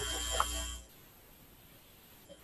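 Steady electrical hum and hiss from a live microphone or audio line, with a faint click partway through, cutting off abruptly just under a second in and leaving only a faint noise floor.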